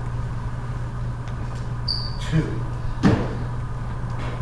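Steady low hum of a large room, with a short high squeak about two seconds in and a sharp knock just after three seconds.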